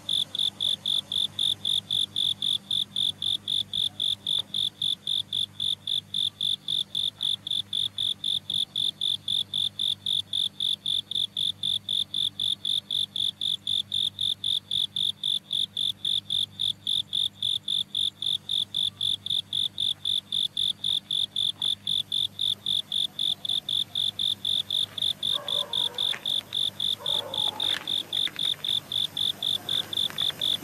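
A cricket chirping steadily, a high pulsed trill of about three chirps a second that never breaks.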